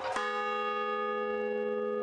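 A large hanging bell struck once just after the start, then ringing on with a steady hum of several tones that holds without fading.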